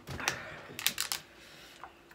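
Quick clicks and crackles of a small red plastic item being handled: a short cluster just after the start and another about a second in.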